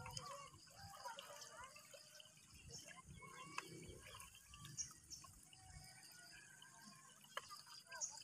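Near silence: faint outdoor ambience with distant voices early on and a few small drips or ticks of water.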